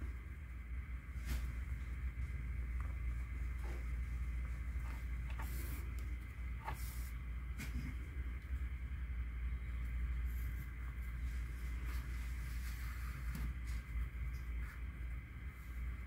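Faint handling sounds of cotton yarn being drawn with a needle through a crocheted doll head: soft rustles and scattered light ticks over a steady low hum.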